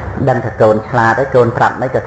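A man speaking in Khmer, with a low steady hum underneath.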